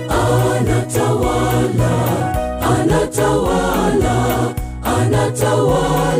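Mixed choir of men's and women's voices singing a gospel song in harmony over a backing with a deep bass line and a steady beat.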